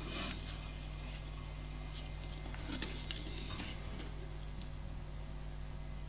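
A few faint soft taps and scrapes of an acrylic nail brush pressing wet acrylic beads into petals on a foil sheet, over a steady low electrical hum.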